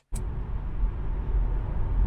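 Steady road noise inside a Tesla Model 3 Performance cabin at highway speed, about 110 km/h: mostly a low rumble with a faint hiss above it and no engine sound. It starts abruptly just after the beginning.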